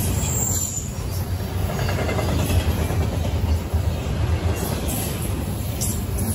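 Double-stack intermodal freight train's container-laden well cars rolling past at close range: a steady low rumble of steel wheels on rail.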